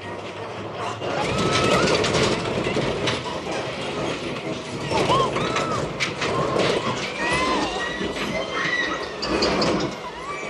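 Steady clattering with many short, high-pitched squeals scattered through it, like rail wheels running and squealing, heard as part of a film soundtrack.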